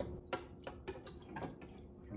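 Faint light clicks and taps of laboratory glassware being handled during an iodine titration, about three a second and unevenly spaced.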